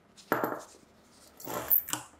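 A small drill bit working into the crimped brass pin of a two-pin compact fluorescent lamp's plastic base: a sharp knock about a third of a second in, then a scraping burst that builds and cuts off near the end.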